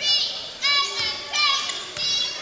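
High-pitched shouts and cheers from young voices in a gym, in several short calls, with a basketball being dribbled on the hardwood floor.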